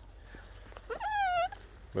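A dog's short, high-pitched whine about a second in, lasting half a second and sliding down in pitch.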